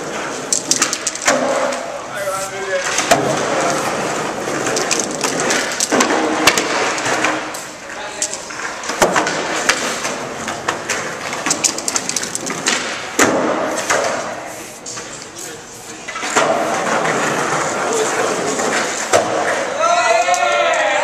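Busy skate-park din: indistinct background voices and skateboards rolling and clacking, with many sharp knocks, while an aerosol spray can hisses in short bursts against the wall close by. It is quieter for a moment around two-thirds of the way through.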